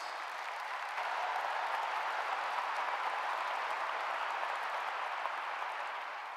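Audience applauding, a steady patter of clapping that thins out near the end.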